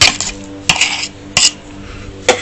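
Kitchenware clinking: three sharp clinks with a brief ring, about two-thirds of a second apart, over a steady low hum.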